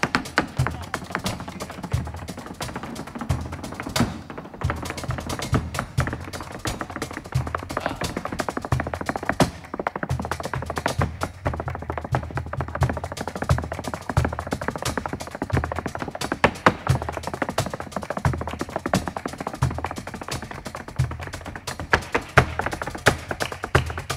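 Flamenco footwork (zapateado): rapid heel and toe strikes of a dancer's flamenco shoes on the stage floor, dense and fast, with heavier low stamps among them, over flamenco accompaniment.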